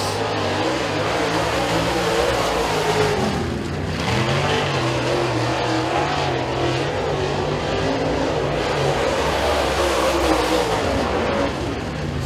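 Dirt super late model race cars' V8 engines running hard on time-trial laps. The engine note dips briefly about three and a half seconds in, then comes back stronger.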